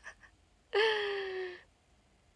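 A young woman's brief wordless vocal sound: one held, high-pitched note that falls slightly in pitch and lasts just under a second, starting about a second in.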